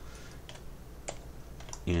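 A few faint clicks of computer keys, about three spread across the moment, over a low steady hum.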